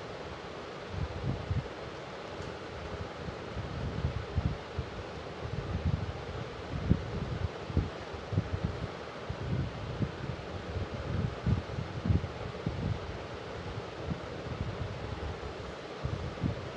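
Cloth rustling and irregular soft low knocks as hands work a needle and thread through fabric stretched in a wooden embroidery hoop, over a steady hiss.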